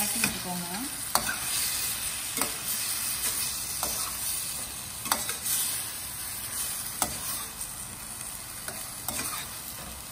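Prawns frying in masala in a stainless steel pan, with a steady sizzle. A metal slotted spoon stirs them, clinking and scraping against the pan every second or two.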